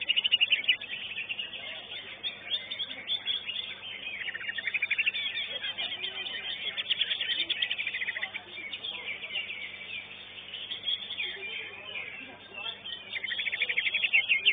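A cucak ijo (greater green leafbird) singing a fast, chattering song of rapidly repeated notes in long bursts. The song eases off for a few seconds past the middle and is loud again near the end.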